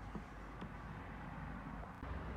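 Faint steady outdoor background noise, with two faint clicks in the first second.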